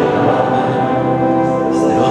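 Church congregation singing a hymn in long held notes.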